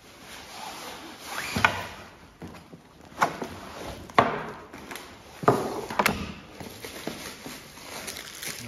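Groceries being unpacked and set down on a table: about five sharp knocks as items are put down, with paper and plastic wrapping rustling between them.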